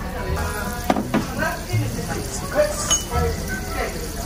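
Utensils clinking against tableware, two sharp clinks about a second in, over background music and voices.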